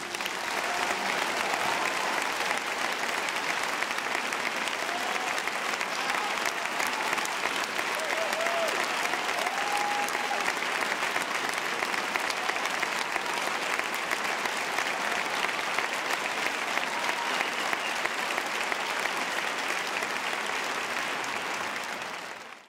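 Theatre audience applauding steadily at the end of a performance, with a few faint voices calling out in the middle.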